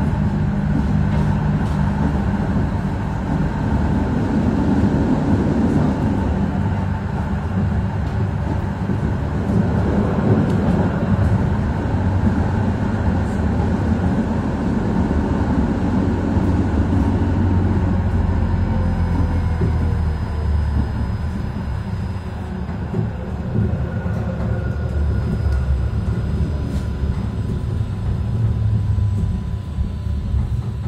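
Inside a Moderus Beta MF19AC low-floor tram under way: a steady rumble of wheels on rail with a faint motor whine that glides in pitch, easing a little near the end as the tram slows for a stop.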